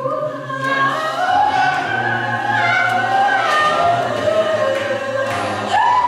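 A cappella gospel choir singing in harmony, with no instruments, holding long notes that slide slowly from pitch to pitch over a low sustained part.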